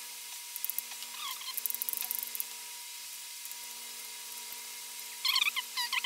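Small screwdriver turning out screws from a laptop's copper heat sink: rapid faint ticking in the first couple of seconds, then a few short squeaks near the end.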